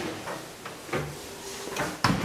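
The swing landing door of a platform lift being opened: a few knocks and rattles from its latch and frame, one about a second in and another near the end.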